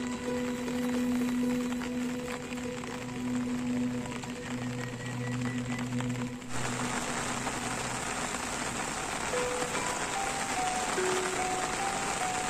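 Sundanese degung music with long held notes. About six and a half seconds in, the steady hiss of heavy rain comes in abruptly and carries on under the music.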